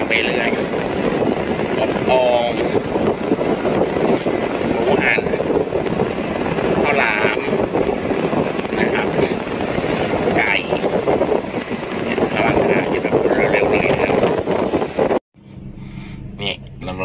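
Steady road and wind noise inside the cabin of a moving car, heard as a loud, even rumble. It breaks off abruptly near the end.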